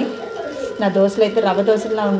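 A woman talking close to the microphone.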